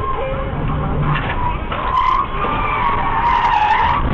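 Car tyres squealing in a skid as the car slides off the road: a wavering high squeal starts about two seconds in and grows louder, over the running road noise.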